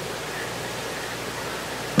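Steady, even hiss of background noise with no other event: room tone through a low-quality webcam microphone.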